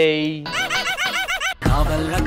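A voice holds a drawn-out note, then breaks into rhythmic laughter of about four or five quick 'ha's a second. Loud music cuts in suddenly near the end.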